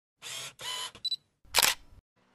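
Camera sound effects: two short bursts of noise, a quick high double beep, then a loud shutter click about one and a half seconds in.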